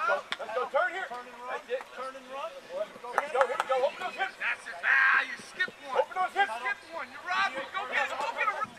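Men's voices talking and calling out over one another, with a louder shout about five seconds in.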